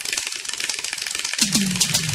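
Instrumental break in a Bollywood film song: rattling hand percussion in quick high strokes with the bass dropped out. About one and a half seconds in, a low bass note enters and slides down in pitch.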